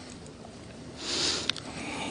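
A short sniff or quick intake of breath through the nose about a second in, followed by a small mouth click, over quiet room tone.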